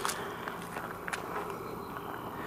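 Footsteps on gravel, a few light crunches, over a faint steady hum of insects.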